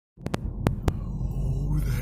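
Steady low rumble of a car driving, heard from inside the cabin, with four sharp clicks in the first second.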